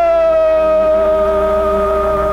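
Live rock band music from a 1970 concert recording: one long high note is held, sinking slightly in pitch, over steady lower sustained notes.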